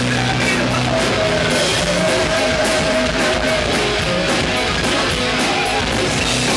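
Heavy metal band playing live: loud, dense distorted electric guitar with bass and drums, and a high note held for about three seconds from about a second in.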